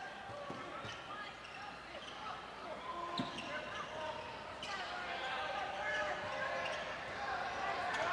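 A basketball being dribbled on a hardwood gym floor, a few irregular bounces over the steady murmur of the crowd in the gym.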